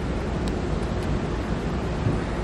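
Steady background hiss with a faint tick about half a second in.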